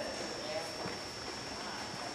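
Quiet room tone of a large hall with a faint steady high-pitched whine and a few faint, indistinct murmurs.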